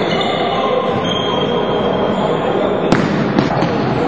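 Indoor floorball game noise: a steady din of players' and spectators' voices echoing in the hall, with two sharp knocks from the play about half a second apart near the end.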